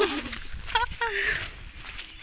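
A person's voice making a couple of short vocal sounds over steady background noise.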